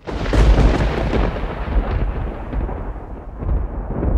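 A deep rumbling noise effect that starts suddenly and loudly, its hiss slowly dulling while the rumble holds, then cutting off abruptly.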